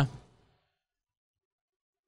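The end of a man's spoken "yeah" in the first moment, then silence: a dead-quiet pause in a podcast conversation.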